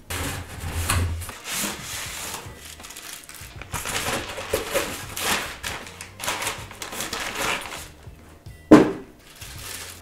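Cardboard box sealed with plastic packing tape being cut open with a small blade: a few quick slitting strokes, then the flaps pulled open and cardboard rubbing and rustling as it is handled. There is a single sharp thump near the end.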